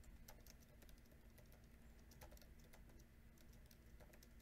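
Near silence: faint, irregular ticks, a few each second, over a low steady hum.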